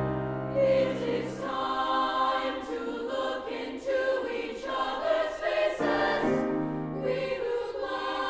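Treble choir of women's voices singing in parts, with piano accompaniment.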